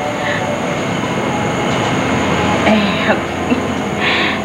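Steady rushing rumble of background noise, with a few short voice sounds about three seconds in.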